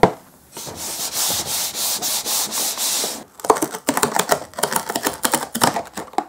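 Cardboard ice-cream box having its tear strip pulled: a continuous ripping rasp for about two and a half seconds, stopping suddenly. A quick run of cardboard clicks and crackles follows as the box is opened.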